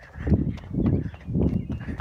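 Running footfalls on a paved path with the phone jostling in hand: three heavy low thuds about half a second apart.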